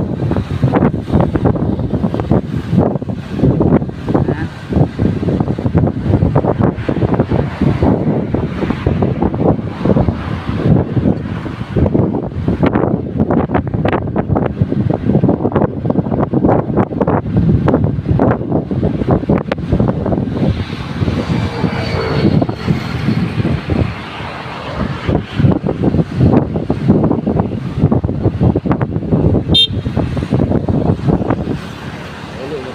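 Wind buffeting the microphone of a camera on a moving vehicle, mixed with steady road and engine noise. About two-thirds of the way through, a faint whining tone slides in pitch for a couple of seconds.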